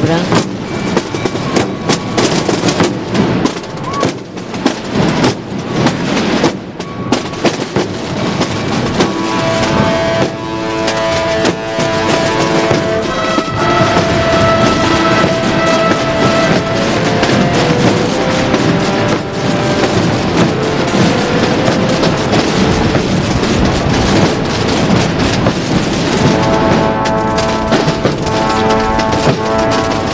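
Massed procession drums, snare drums and bass drums, beating a dense continuous roll. About nine seconds in, a ministriles brass group with trombones joins with a slow, held melody over the drumming.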